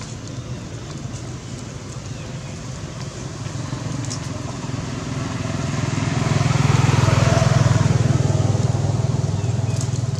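A motor vehicle's engine hums steadily, growing louder to a peak about seven seconds in and then easing off, as if passing by.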